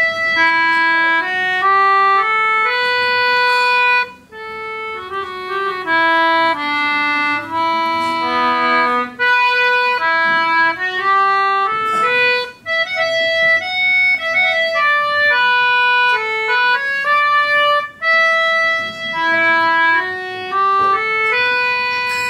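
Concertina playing a slow air solo: a melody of held reed notes stepping up and down, with brief breaks between phrases.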